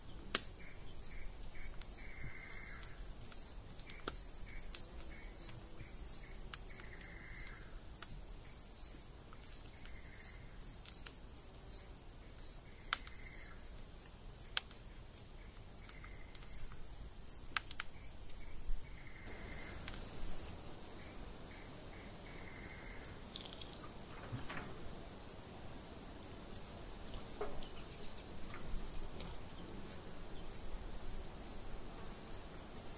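Crickets chirping at night: a regular high chirp about twice a second over a steady, higher insect trill that gets louder about two-thirds of the way through, with a few faint clicks.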